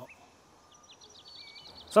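Faint birds chirping in the background: a scatter of short, high chirps and one brief whistled note, from about a second in until just before a man's voice resumes.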